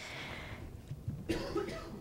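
A woman's soft cough, faint and brief, about a second and a half in.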